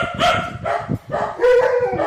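A dog whining in a run of short, high-pitched yips, then one longer, lower whine near the end.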